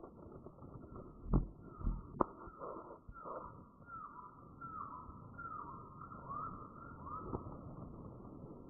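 Two sharp knocks early on, then a bird giving a series of short falling calls, about one every 0.7 s for several seconds, over a faint forest background.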